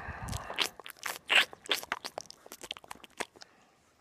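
A quick, irregular run of sharp clicks and crackles close to the microphone. The loudest comes about a second and a half in, and they thin out after about three seconds.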